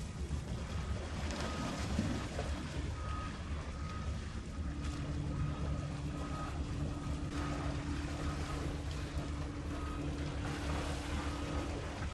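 Small inflatable boat's outboard motor running steadily over open water, with wind rumble on the microphone. A steadier engine hum comes in about five seconds in, and faint short high beeps recur now and then.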